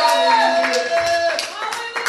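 Congregation clapping in rhythm, with a man's voice over the PA holding long sung notes that bend at their ends.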